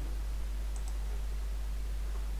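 A steady low hum under faint background hiss, with a faint double click a little before the middle.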